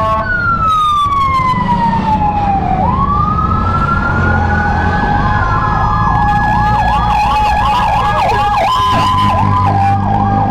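Fire truck siren: a long wail falling in pitch, then rising again, switching about six seconds in to a fast warbling yelp of a few cycles a second, with a second steady tone sounding alongside. Motorcycle engines idle low underneath.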